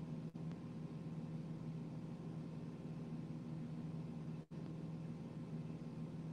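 Steady low hum with a faint hiss, background room or line noise, briefly cutting out twice.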